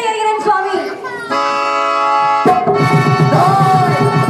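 A woman's voice sings a line that trails off, then a harmonium holds a steady chord. About two and a half seconds in, a mridangam joins with a regular beat under the harmonium, and a voice briefly slides up and down on a sung note.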